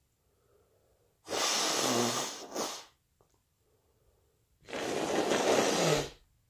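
A person with a cold breathing heavily right at the microphone: two long, loud, rasping breaths, one about a second in and one near the end, with quiet pauses between.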